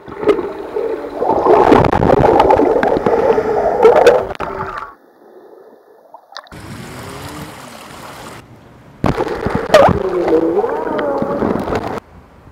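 Water gurgling and sloshing, with wavering pitched sounds running through it, in two loud stretches: one of about five seconds at the start and one of about three seconds near the end. Between them is a quieter stretch of steady hiss.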